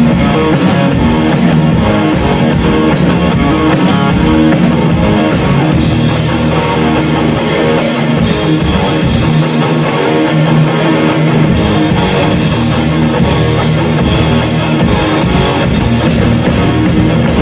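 A live rock band playing loudly: electric guitar, bass guitar and drum kit, with drum and cymbal hits standing out more from about six seconds in.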